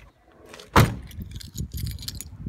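The rear door of a 1997 Honda Accord slammed shut about a second in, a single loud thud, followed by light clatter and handling noise.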